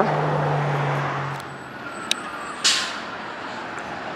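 A road vehicle's engine running, its steady hum fading after about a second and a half. There is a single tick about two seconds in and a short hiss just before three seconds.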